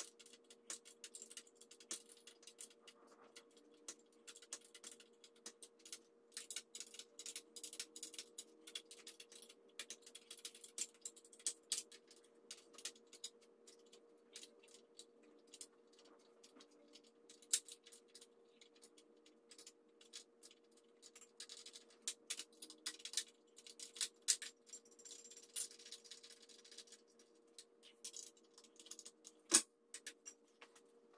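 Ratchet wrench clicking in irregular runs as bolts are loosened on a steel floor-jack frame, with metal tools and bolts clinking now and then and a louder clink near the end. A faint steady hum runs underneath.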